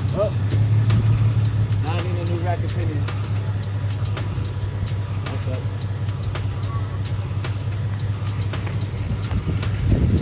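A car engine idling steadily, a low even hum, with a few brief voices over it.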